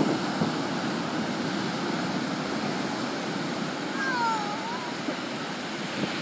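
Ocean surf breaking on the beach, a steady wash of wave noise, with a brief high-pitched call about four seconds in.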